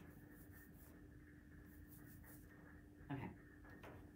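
Near silence: room tone with a faint steady hum, a few faint rustles and one brief soft sound about three seconds in.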